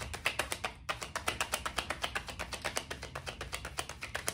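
A deck of tarot cards being shuffled by hand, cards pulled off the top of the deck in the other hand. It makes an even, rapid run of light card clicks, several a second.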